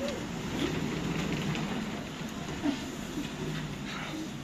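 Ambulance van's engine running at low speed as it manoeuvres, a steady low hum, with faint voices in the background.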